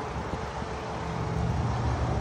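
Steady low rumble of motor vehicle and traffic noise outdoors, growing a little louder about a second in.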